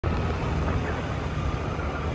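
Motorcycle on the move: steady engine and road rumble with wind noise across the microphone.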